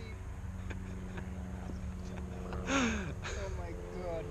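A man's short exclamation, falling in pitch, about three seconds in, over a steady low rumble and a faint steady hum.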